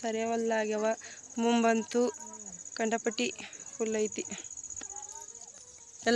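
Crickets chirring in a field, a steady high-pitched drone that runs on under a person's voice calling out in several drawn-out calls during the first few seconds.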